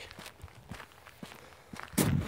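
A few faint soft taps and scuffs, then right at the end a loud rustling bump as a smartphone is gripped and handled close to its microphone.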